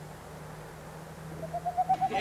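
Owl hooting: a rapid run of short, evenly spaced hoots, roughly ten a second, starting about one and a half seconds in and growing louder, over a low steady hum.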